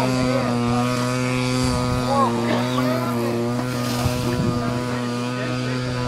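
Radio-control T-28 model airplane's engine running at a steady throttle overhead, one even drone that holds its pitch, with faint voices in the background.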